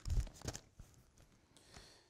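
Bible pages rustling as they are turned at the pulpit microphone: a short papery burst with a low thump in the first half second, a few faint ticks after, then near quiet.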